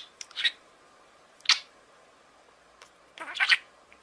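Parrot giving short, sharp, high-pitched calls: a few quick ones at the start, one about a second and a half in, and a longer run of calls near the end.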